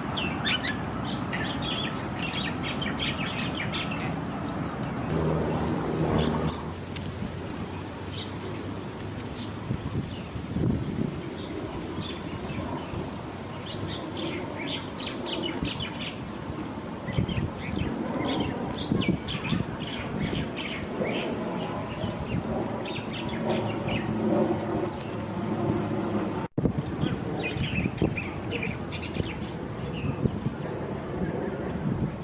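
Many small birds chirping over a steady low background rumble. The sound cuts out for an instant near the end.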